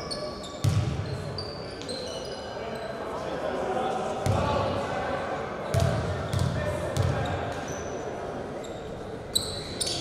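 Basketball bouncing on a hardwood gym floor, a few dribbles in the middle as a player readies a free throw, with sneakers squeaking and voices echoing in the hall behind.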